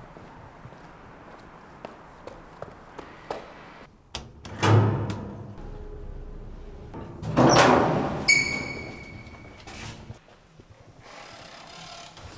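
Doors and an elevator: a door shutting heavily about four seconds in, then elevator doors sliding about seven seconds in, followed by a steady electronic beep lasting over a second.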